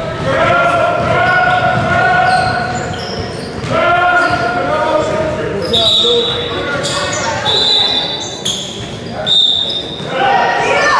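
Youth basketball game in a gymnasium: a basketball bouncing on the hardwood floor under raised, held voices of players and spectators, echoing in the large hall. Brief high squeaks come several times in the second half.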